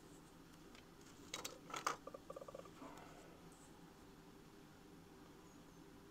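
Near silence: room tone, broken by a few brief faint clicks and a short rapid ticking about two seconds in.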